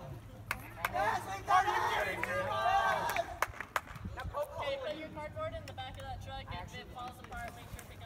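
Several people's voices calling out and chattering, too unclear to make out, with a few sharp knocks scattered through.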